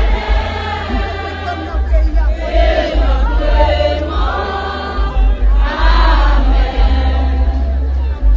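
A group of voices singing together over music with a heavy bass underneath.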